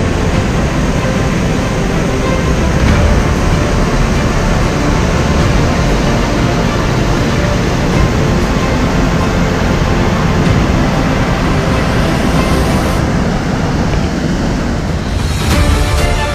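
Loud, steady rush of a waterfall and rocky river rapids, with music faint beneath it. The water sound gives way to music about fifteen seconds in.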